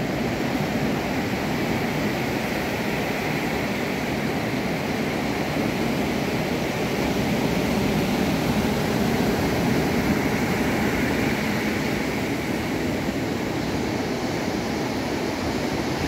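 Ocean surf breaking around the pier pilings: a steady rush of waves that swells a little about halfway through.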